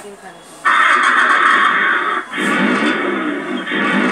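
The ride-on toy car's built-in speaker plays its electronic start-up sound after the car is switched on. The sound is loud and tinny, starts abruptly about half a second in, breaks off briefly just after two seconds, then carries on.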